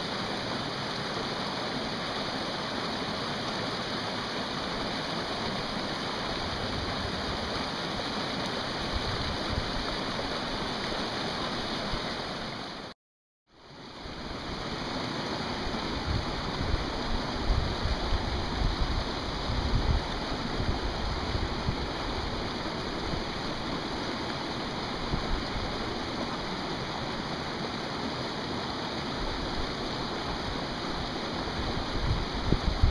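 Mountain creek water running over granite, a steady rushing wash. It drops out completely for a moment about thirteen seconds in, then carries on.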